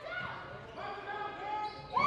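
Game sound in a gymnasium: a basketball being dribbled on the hardwood court under faint crowd voices, echoing in the hall.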